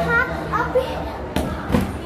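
Children's voices talking and calling out as they play, with a couple of sharp knocks about one and a half seconds in.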